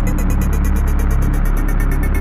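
Electronic background score with a deep, steady bass drone and a fast ticking pulse of about ten beats a second over it.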